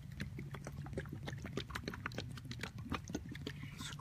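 Irregular crackling and clicking, many small snaps a second, as dry leaf litter is stirred or stepped on, over a low steady hum.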